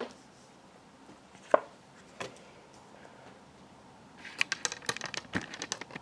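A few single soft taps as tarot cards are laid on a cloth-covered table, then, near the end, a dense run of rapid clicks and rubbing as the camera is handled and repositioned.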